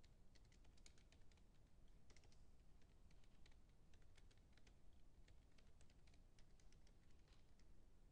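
Faint typing on a computer keyboard: an uneven run of key clicks, several a second.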